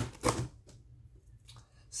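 A hand rummaging in a cardboard shipping box: a short, loud rustle of cardboard and packaging about a quarter second in, then only faint scattered handling clicks.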